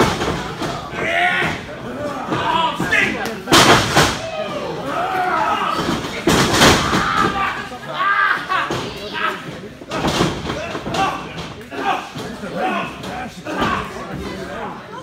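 Two loud slams on a wrestling ring, the first about three and a half seconds in and the second about three seconds later, with voices and shouting from the crowd throughout.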